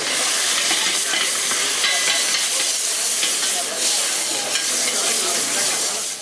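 Food frying in a pan over a gas burner while a spatula stirs it: a steady sizzle.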